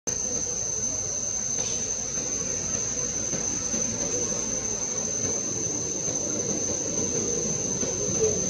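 Steady drone of insects, one unbroken high-pitched tone, over a low background rumble.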